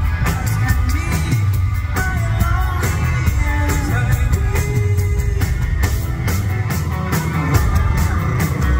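Live rock-and-roll band with a steady drum beat and a male lead singer.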